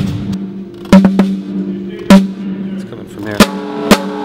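Drum kit played by hand with sticks: about five loud, sharp drum strikes at uneven intervals, with a steady low ringing tone sustained between them.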